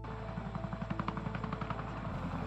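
CH-47 Chinook tandem-rotor helicopters hovering, the rotors beating in a fast, even chop, with faint background music underneath.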